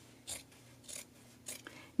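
Scissors snipping through jersey-knit t-shirt fabric, three cuts a little over half a second apart.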